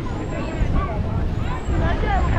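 Chatter of people nearby, no single clear voice, over a steady low rumble of wind on the microphone.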